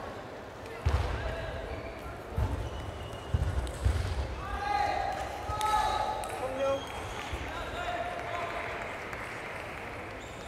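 Voices calling out in a large hall between points, with four dull low thuds in the first four seconds.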